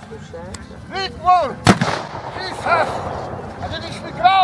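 A single sharp black-powder shot about a second and a half in, ringing out briefly. Around it come repeated short calls whose pitch rises and falls.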